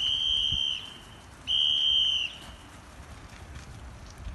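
Two long, steady high-pitched tones, each under a second, sounded about a second apart: a recall signal calling tigers back in.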